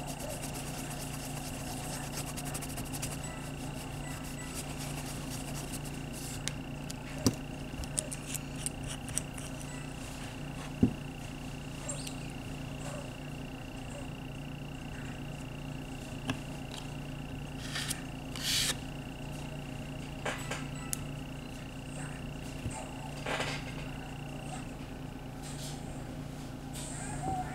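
Small clicks and short scrapes of nail-stamping tools working on a metal stamping plate, the longest scrape about two-thirds of the way through, over a steady electrical hum and a faint high whine that stops near the end.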